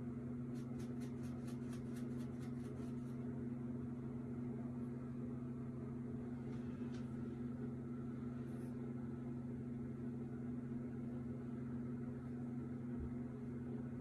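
A steady low electrical hum, with a quick run of short brushing strokes, about four a second, in the first three seconds: a comb working through hair.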